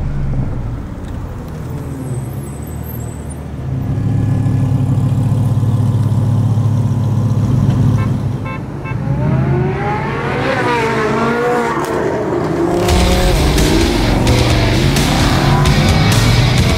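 Sports car engines: a steady deep drone, then about ten seconds in the revs rise and fall in several quick blips, and near the end a louder, rougher engine note with crackles.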